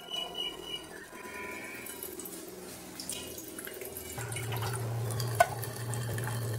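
Purified water dripping and trickling slowly from a Xiaomi countertop water purifier's faucet into a stainless steel basin. The flow is slow because the filter has just been changed. A low steady hum comes in about four seconds in.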